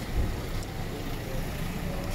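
Low, steady rumble of traffic on a rain-wet street, with an even hiss over it.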